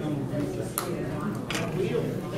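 Indistinct chatter of several people talking in a small room, with two sharp clicks or knocks in the middle.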